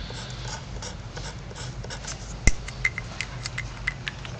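Felt-tip Sharpie marker drawing on paper. A sharp tap comes about halfway through, then a quick run of short, squeaky strokes as a star is drawn.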